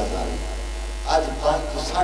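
A man's voice through a microphone and PA system, a few short phrases in the second half, over a steady low electrical hum from the sound system.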